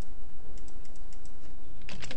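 Computer keyboard being typed on: a quick run of light key clicks as a word is finished, over a steady low hum.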